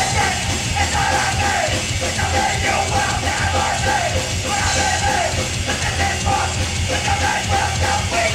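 Hardcore punk band playing live at full volume: distorted electric guitars, bass and drums driving hard under a singer shouting into the microphone.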